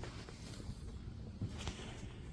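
Quiet background hum with a few faint light clicks about one and a half seconds in.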